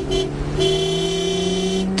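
Car horn honking: a short toot, then a long honk from about half a second in until near the end, over a running car engine whose pitch slowly rises.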